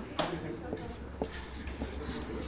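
A marker pen writing on flip-chart paper: several short, separate strokes as a figure is written.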